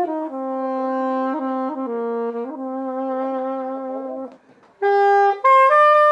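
Solo saxophone playing a slow melody of long held notes, low at first. About four and a half seconds in, the playing breaks off for a moment, then resumes on higher notes.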